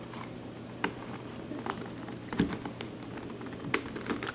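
Plastic pieces of a six-layer Royal Pyraminx puzzle clicking as its layers are twisted by hand: four scattered clicks, the loudest near the end.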